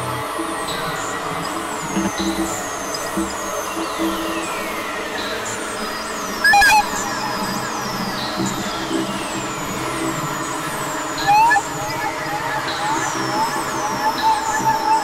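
Experimental synthesizer drone music from Novation Supernova II and Korg microKorg XL synthesizers: a dense bed of layered tones crossed by many falling pitch sweeps. Two short, louder bursts come about six and a half and eleven seconds in.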